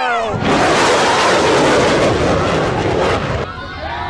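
Fighter jet passing low at transonic speed, trailing a vapor cone: a falling whine gives way about half a second in to a loud, rough roar that lasts about three seconds. Near the end the roar cuts off and a quieter, steady jet engine whine follows.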